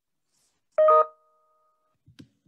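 A short electronic notification chime about a second in: a quick two-note ding-dong, higher note then lower, ringing out and fading over about a second.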